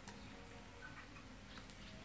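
Faint, scattered clicks of chopsticks against a tabletop mookata grill pan and bowls, over a low steady hum.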